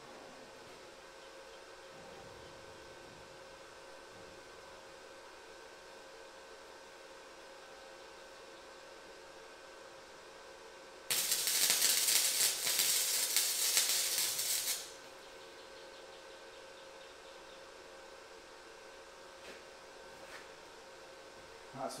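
Flux-core wire welder laying a single tack weld on steel flat bar: a loud, crackling arc that starts about halfway through, lasts about three and a half seconds, then stops. A faint steady hum runs underneath.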